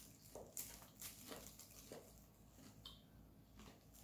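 Near silence: room tone with a few faint soft clicks and a brief faint high tone about three seconds in.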